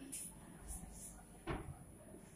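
A single short knock about one and a half seconds in, over faint room noise, with a few fainter clicks near the start.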